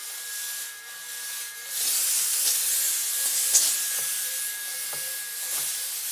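Shark Lift-Away Professional steam pocket mop (S3901), used as a handheld steamer, spraying steam: a steady hiss that comes in about two seconds in, over a faint steady whine from the unit.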